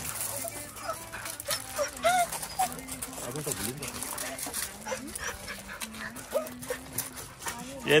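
Dogs giving short, high whimpers and squeaks as they mill around and greet each other, with paws crunching on gravel.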